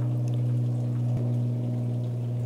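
Steady low hum of a running electric motor, even and unchanging, with a faint wash of noise over it.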